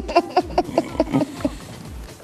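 A woman laughing in quick repeated bursts, with background music's steady low beat underneath.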